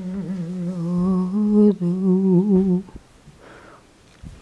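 A person humming a tune in two phrases of held notes, stopping about three seconds in.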